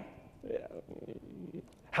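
Faint, low off-microphone voices in a pause between the presenter's words, quiet against the hall's background.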